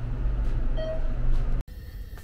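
Elevator cab in motion: a steady low rumble inside the car, with a short electronic beep a little under a second in. The sound cuts off abruptly about a second and a half in.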